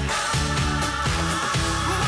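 Pop song with a steady dance beat, played by a band with drums on a stage.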